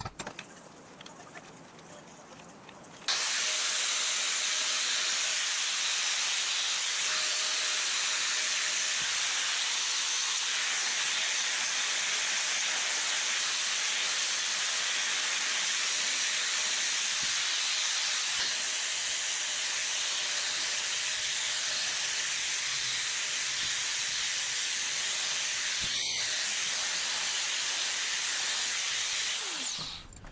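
Electric angle grinder with a flap disc grinding steel: a steady hissing grind that starts abruptly about three seconds in and holds at an even level until it stops just before the end. Light handling clicks come before it.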